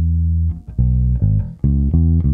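Four-string electric bass played fingerstyle: a held low note rings for about half a second, then a phrase of three or four short plucked notes.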